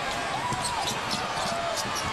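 A basketball dribbled on a hardwood court, heard over steady arena crowd noise, with a brief voice about half a second in.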